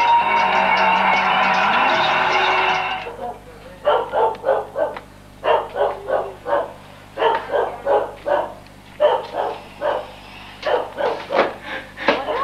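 Music plays and cuts off abruptly about three seconds in; then a small dog barks repeatedly in short yaps, in quick clusters of two to four.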